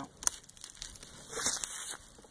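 Metal hive tool prying at the lid of a wooden beehive, giving a few irregular small clicks and crackles as the lid is worked loose. The lid is stiff to pry in the winter cold.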